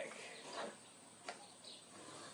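Quiet, with a couple of faint light clicks about half a second and a second and a quarter in, as a small plastic magic-trick cup and ball are handled on a table.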